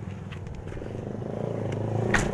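A motor vehicle's engine nearby, growing steadily louder.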